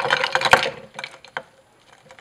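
Glass beaker pushed down into a bowl of ice cubes and cold water: ice clattering and knocking against the glass and the ceramic bowl, loudest in the first half second with a sharp knock about half a second in, then a few scattered light clicks.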